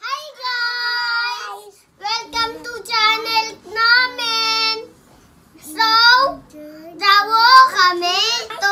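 Young children singing a short song in a few sung phrases, with brief pauses between them.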